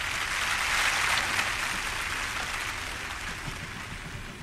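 Applause that swells over the first second and then slowly dies away.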